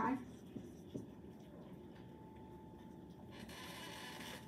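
Dry-erase marker writing on a whiteboard: faint strokes with a couple of short ticks in the first second or so, then quiet room tone.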